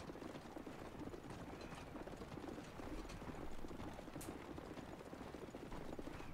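Horses galloping, a dense steady run of many hoofbeats, heard faintly on the anime's soundtrack.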